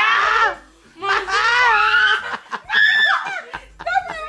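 People laughing in three bursts, with short breaks between them.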